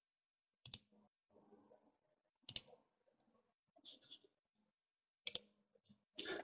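Near silence broken by three faint clicks, about a second, two and a half seconds and five seconds in: handling noise on a webinar participant's microphone as it is switched on.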